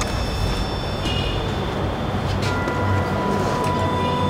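A steady low rumbling drone from a suspense background score. Thin sustained high tones come in about halfway and hold on.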